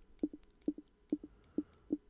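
A run of short, soft clicks, about eight in two seconds, each keeping step with the highlight moving one item down a Kodi menu list.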